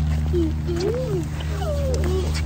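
A baby making a few short vocal sounds that glide up and down in pitch, over a steady low hum.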